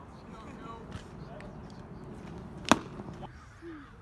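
A single sharp crack of a baseball bat striking a pitched ball about two-thirds of the way in, over the low chatter of spectators.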